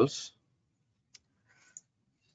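Two faint computer mouse clicks, about a second in and again near the end.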